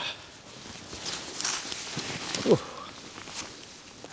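Rustling and sharp clicks of a heavy hiking backpack and waterproof clothing being handled and hoisted, with a short falling groan of effort about two and a half seconds in.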